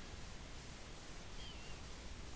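Quiet steady background hiss of room tone, with one faint, short high chirp that falls slightly in pitch about one and a half seconds in.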